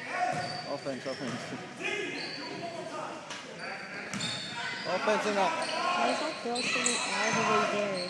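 Girls' basketball game on a hardwood gym court: the ball bouncing and sneakers giving short high squeaks, under spectators' chatter and calls that echo in the hall and grow louder after about five seconds.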